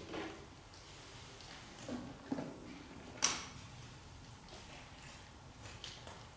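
A few faint knocks and creaks in a quiet, echoing room, with one sharp click about three seconds in.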